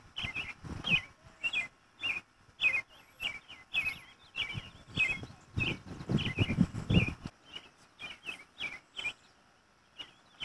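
A small bird chirping over and over, short high chirps two or three a second. A louder low noise comes in about six seconds in.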